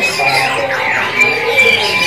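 A dense chorus of caged songbirds: many short whistled notes, trills and pitch glides overlapping, over a background murmur of voices.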